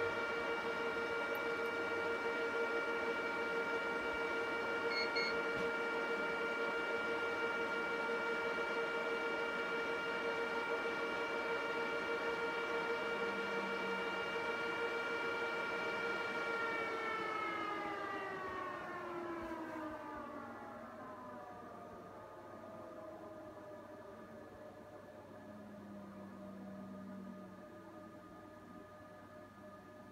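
HP ProLiant ML350p Gen8 server's cooling fans running at high speed with a steady whine, then spinning down about seventeen seconds in, the pitch falling over a few seconds to a lower, quieter hum as the server moves past its power-on self-test into booting.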